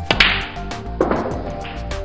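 Snooker shot heard over background music with a beat: a sharp hit about a fifth of a second in, and a second, duller hit about a second in as the red is potted.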